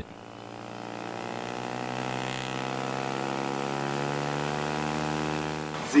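Propeller and hybrid electric drive of a Diamond Aircraft serial hybrid electric light plane running on the ground: a steady hum of many even tones that grows louder over the first couple of seconds, holds, and cuts off abruptly near the end.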